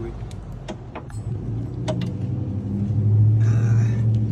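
A few light clicks from hand tools at a car jack, then the low steady engine hum of a nearby motor vehicle that grows louder through the second half, with a brief hissing rush near the end.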